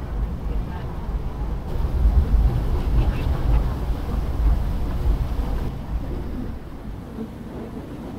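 Low, steady rumble of the thousand-foot lake freighter Mesabi Miner passing close by, mixed with wind buffeting the microphone; the rumble eases off over the last couple of seconds.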